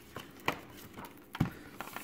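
A large hardcover book being opened and its endpaper turned by hand, giving a few light knocks and paper rustles; the sharpest knock comes about one and a half seconds in.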